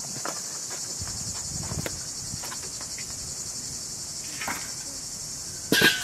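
Crickets chirping in a steady, high-pitched drone. Scattered small knocks, and near the end a loud, sudden clatter with a brief ring as the charcoal grill pot is handled.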